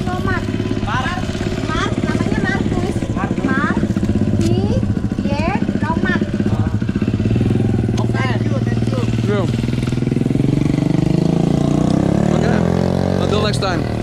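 Small motorcycle engine running steadily, then rising in pitch for a few seconds near the end as it speeds up. Short calls from voices come over it during the first part.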